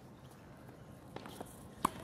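Faint footsteps on a hard tennis court, then a single sharp tennis racket hitting the ball near the end.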